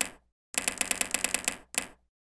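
Typewriter keystroke sound effect: one key strike, then a quick even run of about a dozen strikes lasting about a second, and one last strike near the end.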